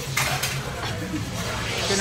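Tableware clinking: a few sharp clicks of chopsticks and dishes against metal, over background voices.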